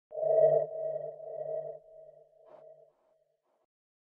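An intro sound effect: a sustained tone of several pitches together that starts suddenly, is loudest in its first half second, and fades out over about three seconds.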